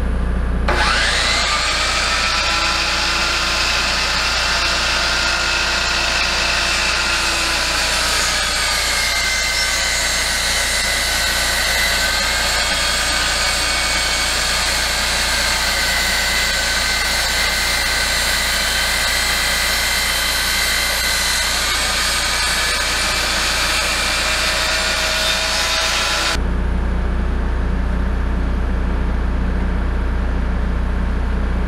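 DeWalt sliding miter saw running and cutting through a thick rough-sawn wooden beam, a loud steady whine of motor and blade in the wood. The cutting stops abruptly near the end, leaving a steady low rumble.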